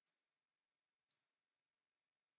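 Two faint computer mouse clicks about a second apart, the first right at the start, over near silence.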